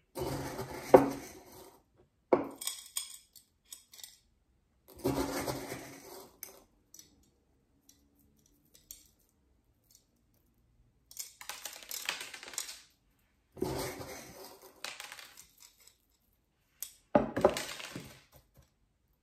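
Small aquarium stones clinking and rattling in about six separate bursts as handfuls are scooped from a mug and dropped onto the soil of a ceramic succulent pot as top dressing. The sharpest clink comes about a second in.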